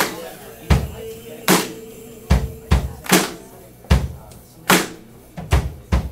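Live band's drum kit playing a slow beat, low bass drum hits alternating with sharp snare hits about every second and a half, with a faint held note under it in the first couple of seconds.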